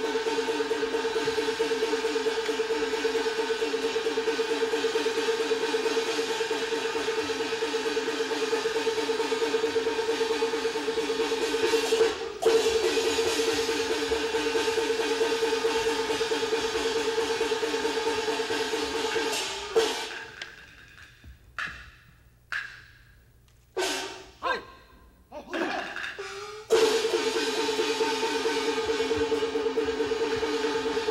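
Peking opera orchestra accompanying a martial scene, with a held melodic line over fast, even percussion. About twenty seconds in the ensemble drops out, leaving a handful of separate sharp percussion strokes, and the full music comes back near the end.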